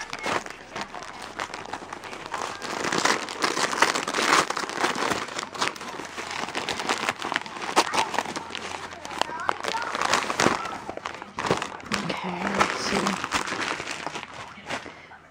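Christmas wrapping paper being torn open and crumpled as a present is unwrapped: continuous rustling and crinkling with many sharp crackles.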